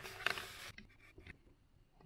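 A USB cable's plug being fitted into the socket at the base of a USB condenser microphone: a short scraping rustle of hands and cable, then a few faint clicks, dying away to near quiet.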